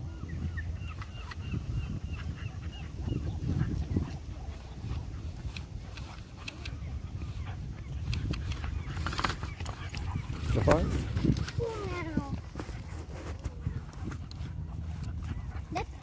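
A boxer puppy and an English Springer Spaniel puppy play-fighting on grass: scuffling over a low rumble, with a few short gliding yips about eleven seconds in.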